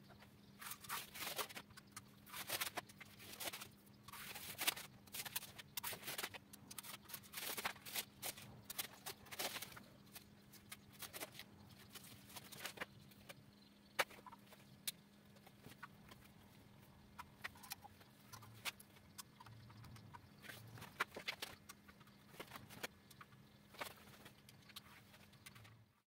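Masking tape being peeled and pulled off a freshly painted motorcycle fuel tank: faint, irregular crackling and ripping, with a low steady hum underneath.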